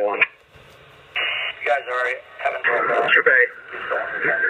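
Police two-way radio voice traffic heard through the radio's speaker, narrow and tinny. After the first word there is a short gap of faint hiss, then more transmissions follow.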